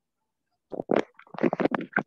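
Muffled, crackly rumbling noise from an open microphone on a video call, starting a little under a second in.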